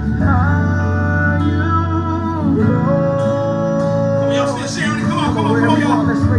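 Recorded worship music: a singing voice holding long notes that slide from one pitch to the next, over guitar accompaniment.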